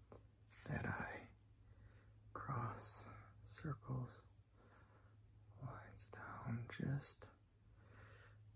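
A man whispering softly in short phrases close to the microphone.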